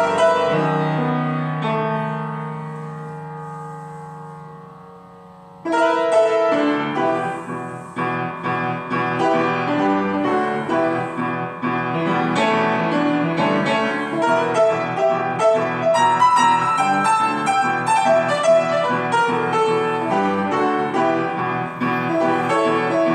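Solo piano playing. A held chord rings and fades for about five seconds, then loud, busy playing with many quick notes starts suddenly.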